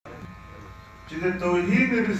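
A steady electrical buzz for about a second, then a man's speech over a microphone starts again and covers it.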